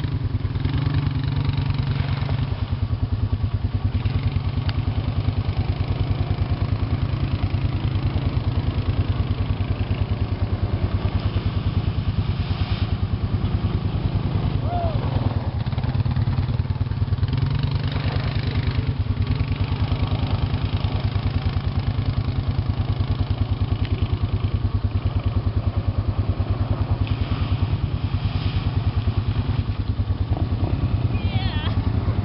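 ATV engine running steadily close by, a fast even pulsing that holds the same pitch and level throughout.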